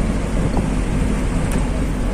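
Diesel truck heard from inside its cab while driving: a steady low engine rumble mixed with tyre and road noise.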